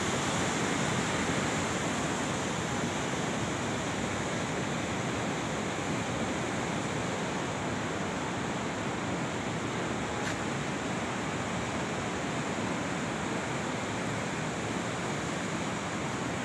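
Steady rushing of the fast glacial Bhagirathi (Ganga) river running over a boulder-strewn bed.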